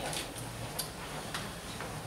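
Light clicks, about one every half second or so, over room noise.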